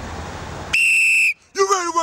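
A single whistle blast: one steady, loud, high note held for about half a second, then cut off sharply. A man's voice starts shortly after.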